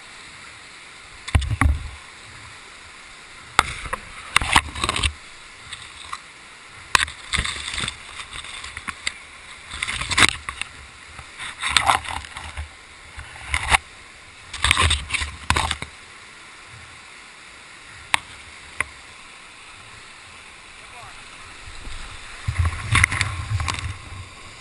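Whitewater rapids rushing steadily, broken by irregular bursts of splashing and knocks against the kayak-mounted camera, with a louder surge of water near the end.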